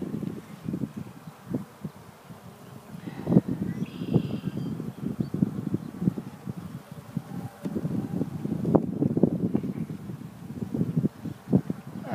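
Wooden beehive frames being lowered into the hive box and pushed together by a gloved hand: irregular soft knocks and wood-on-wood scraping, the loudest knock about a third of the way in.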